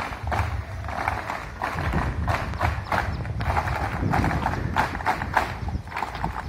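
Marching feet of students and cadets striking the ground in step, a steady rhythmic stamping about three times a second over a low background rumble.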